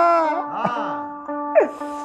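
Telugu devotional song: a singer holds a long, wavering note that fades away, over a steady held instrumental tone, with a quick upward vocal slide near the end.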